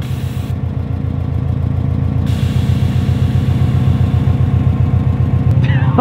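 Air-ride suspension on a stanced Subaru Impreza WRX STI dumping to its lowest setting: a short hiss of venting air, then a longer hiss from about two seconds in until near the end as the car drops. The STI's turbocharged flat-four idles steadily underneath.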